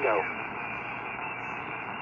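Steady hiss and band noise from a Collins 75A-4 shortwave receiver, tuned to a 10-meter single-sideband signal and heard through a Heathkit speaker, in a gap between transmissions. A radio voice trails off right at the start.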